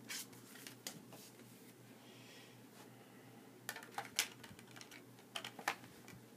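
Faint scattered clicks and taps of a metal steelbook Blu-ray case and its plastic disc tray being handled and closed, with a cluster of sharper clicks about four seconds in and more near the end.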